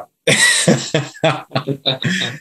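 Laughter: a quick run of short, breathy bursts.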